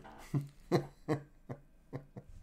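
A trading card pack's wrapper being torn open and the cards pulled out by hand: a handful of short crinkles and clicks, about two a second.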